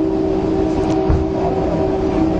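A loud, steady mechanical hum, holding a few unchanging pitches over a noisy background rumble.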